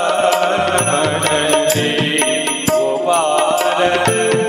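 A man singing a devotional Hindi bhajan, with a gliding, ornamented melody over steady harmonium tones and regular percussion strokes keeping time.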